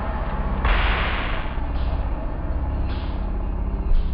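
A TV scene's soundtrack slowed down to a crawl, smeared into a deep drone with a loud swell of hiss about a second in and fainter swells later.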